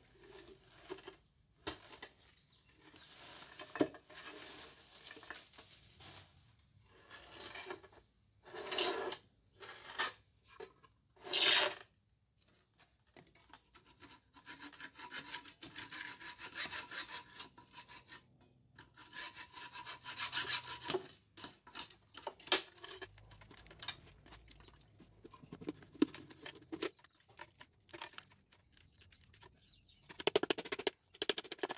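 Hacksaw cutting through the sheet-metal wall of a cement-filled tin paint can, in runs of quick back-and-forth strokes, with short louder scrapes of metal and cement earlier on.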